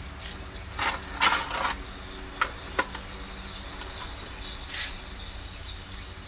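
A few short rustles and scrapes of a hand handling a bonsai and brushing its leaves, bunched in the first half, over a steady high chirring of insects that grows louder from the middle on.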